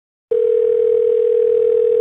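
A telephone ringback tone heard over a phone line: one steady, mid-pitched electronic tone that starts a moment in and holds for about two seconds.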